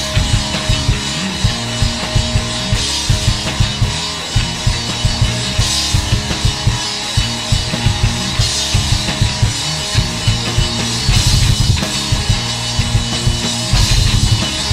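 Live punk rock band playing an instrumental passage: electric guitar over a steady drum-kit beat, with no vocals.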